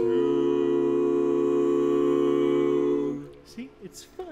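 Male barbershop quartet singing a cappella, holding one sustained four-part chord that cuts off about three seconds in, followed by brief laughter.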